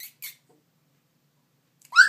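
A four-week-old Goldendoodle puppy gives one sharp, rising yip at the very end, after a couple of faint clicks at the start and a near-silent stretch.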